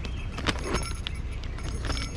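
Clear plastic zip bag crinkling and clicking as it is handled and turned over in the hands.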